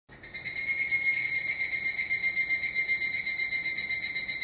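Higurashi (evening cicada) calling: a high, rapidly pulsing trill of about seven pulses a second that comes in within the first half second and holds steady.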